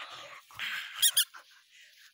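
A dog's squeaky toy squeaks twice in quick succession about a second in, sharp and high, after a second of rustling noise.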